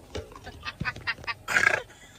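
A woman laughing in a quick run of short cackles, ending in a brief loud, high shriek about one and a half seconds in.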